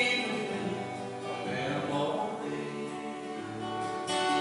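Acoustic and electric guitars playing a gospel song's instrumental passage between sung lines, softer than the singing around it.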